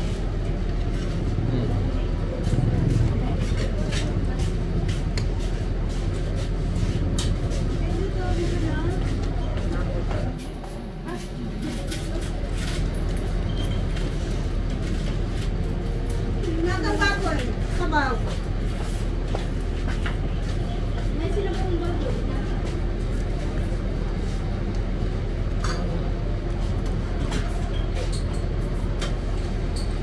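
Steady low rumble of vehicle engines around a bus terminal, dipping briefly about ten seconds in, with background voices and occasional small clinks of cutlery on plates.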